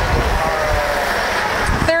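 Low rumble of a vehicle driving slowly through a busy street, with steady road and traffic noise and faint voices in the background.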